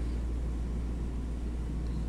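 Steady low background rumble, with nothing else heard.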